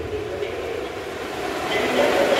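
The reverberant tail of a percussion ensemble dying away in a large gym, leaving a steady wash of room noise. The noise swells slightly near the end.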